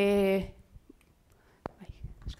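A woman's voice holding a drawn-out hesitation sound at one steady pitch, ending about half a second in. It is followed by faint breathy noises and one sharp click.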